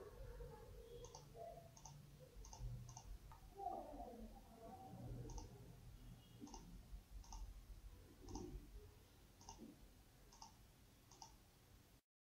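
Faint computer mouse clicks, about a dozen at irregular intervals, as faces are picked one after another in CAD software, over a faint low background noise.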